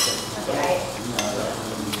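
Light clinks of a spoon against crockery during a meal: three sharp clicks, one at the start, one a little past halfway and one near the end.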